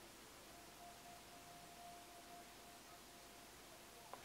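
Near silence, with a faint steady whine from the drone's camera gimbal motor as it slowly tilts the camera. It starts about half a second in and stops a little before the end.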